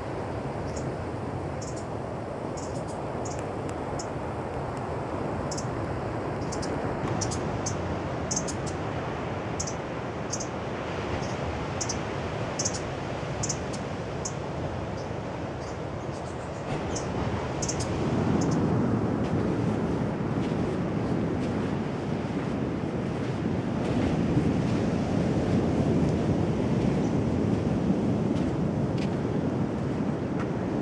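Steady wash of surf and wind, louder from a little past halfway. Through the first half, many short high chirps come and go above it.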